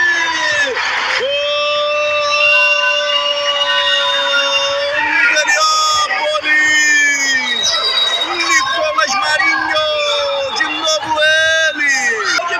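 A man's long, drawn-out goal shout, held on one pitch for about four seconds, followed by more excited calling, with crowd noise underneath.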